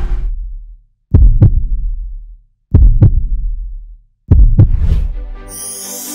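Heartbeat sound effect: three deep double thumps, lub-dub, about a second and a half apart, each fading away. Music with a high shimmering hiss comes in near the end.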